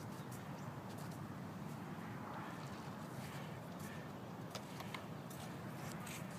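Faint outdoor background noise: a steady low rumble with a scattering of brief, light clicks.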